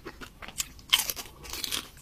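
Close-miked eating: a loud, crisp bite about a second in, followed by crunchy chewing.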